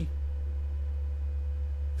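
Steady low electrical hum with a faint, steady, higher tone above it, at an even level throughout.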